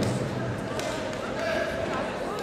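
Indistinct chatter of spectators and coaches in a large hall, with a few light knocks.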